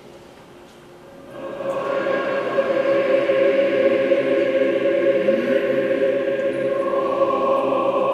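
A church choir begins singing about a second in, holding long sustained chords of Orthodox liturgical chant, with the harmony shifting near the end.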